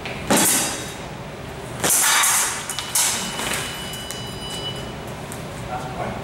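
Fencing bout: three sharp bursts of blade and foot action, the first about a third of a second in and two more around two and three seconds, with a faint steady high tone in the middle.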